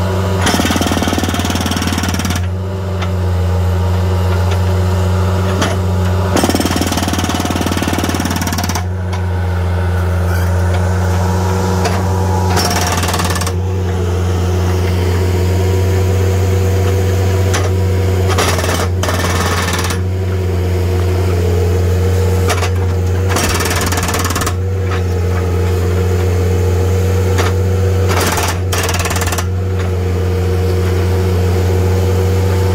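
Skid-steer-mounted hydraulic breaker hammering concrete in about six bursts of one to two and a half seconds, over the loader's steady engine drone.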